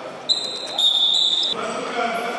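Referee's whistle blown for a kickoff: one shrill blast of about a second that drops slightly in pitch partway, with ball kicks and bounces on the hall floor around it.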